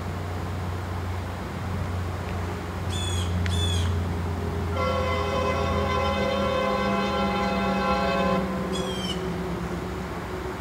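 A distant diesel locomotive's air horn sounds one long steady blast of several notes at once, about three and a half seconds long, starting about halfway in, over a low rumble. A bird calls with quick falling chirps a few seconds in and again near the end.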